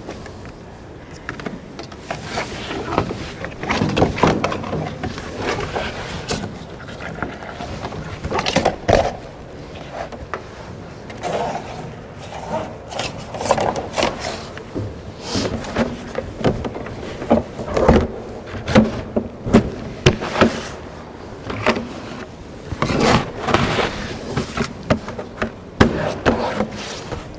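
A heavy fabric friction pad being spread over a cruise missile's body and strapped down: irregular rustling and scraping of the pad material, with scattered knocks and clicks from the straps and fittings.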